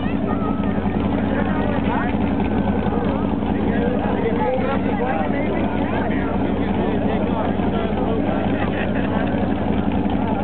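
Vehicle engines running steadily in a low, even drone, with spectators' voices chattering over it.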